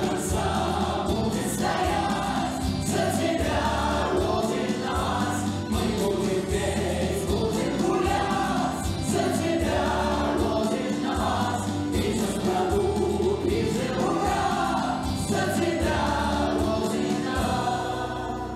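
Mixed choir of men and women singing a song with instrumental accompaniment and a pulsing bass.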